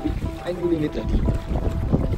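Wind buffeting the microphone and water rushing past a sailboat under way.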